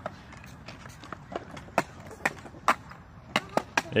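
Small skateboard rolling slowly on concrete, a faint wheel rumble broken by irregular sharp clicks and clacks.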